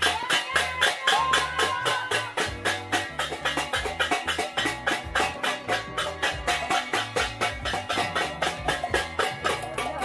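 Metal pot lids struck together over and over in quick, even clangs, about five or six a second, making New Year's noise. Music with a steady bass line plays underneath.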